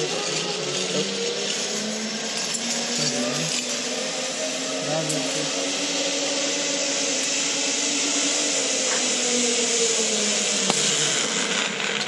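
Zip line trolley pulleys rolling along a steel cable: a continuous whirring whine over a rushing hiss that builds slightly, then breaks off near the end as the rider reaches the platform.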